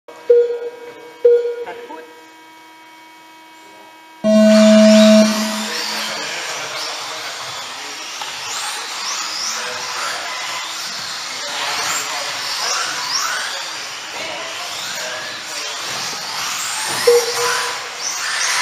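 Two short electronic beeps and a steady hum, then a loud start tone about four seconds in. After the tone a pack of 4WD RC buggies runs round the track, their motors whining up and down as they accelerate and brake.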